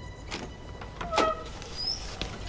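Front door being unlocked and opened: two sharp clicks of the lock and latch about a second apart.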